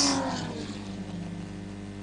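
Race car engine note falling in pitch and fading away over the first half-second, leaving a steady electrical hum.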